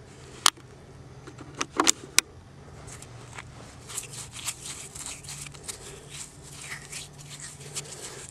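Stone clicking on stone, four sharp clicks in the first two seconds or so, then a run of small faint ticks and rattles of gravel as an agate is worked loose from the gravel.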